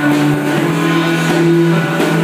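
Live worship band playing an instrumental passage on guitars and keyboard, holding sustained chords that move to a new chord about half a second in.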